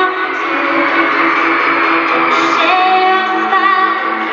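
Live pop music played over an arena PA: a woman singing held, gliding notes over a full band with guitar, with the echo of a large hall.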